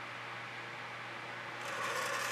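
A steady low background hum. About one and a half seconds in, a soft rustling scrape begins as the stretched canvas is lifted and tilted on its board.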